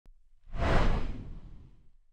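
Intro whoosh sound effect with a deep low rumble, swelling about half a second in and dying away over the next second and a half as the title card appears.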